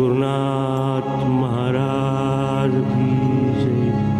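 A Marathi devotional abhang to Ganesh: a solo voice sings long, sliding notes over a steady harmonium drone. The voice drops out after about two and a half seconds while the drone carries on.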